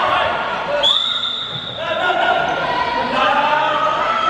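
A handball bouncing on a wooden sports-hall court among shouting voices of players and spectators, with a high whistle blast about a second in, lasting about a second.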